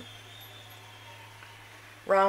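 Quiet room tone with a steady low hum and faint hiss, and no distinct event.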